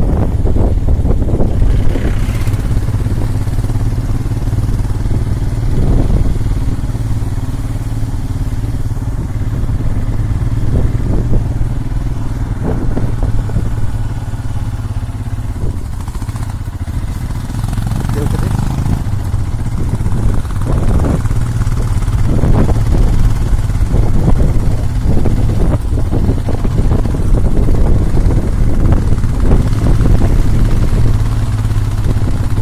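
Motorcycle engine running steadily as a low, continuous drone while riding along a mountain road.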